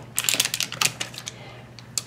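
Hands handling clear plastic rubber-stamping stamps on a craft table: a quick, uneven run of small clicks and taps in the first second or so, then a single click near the end.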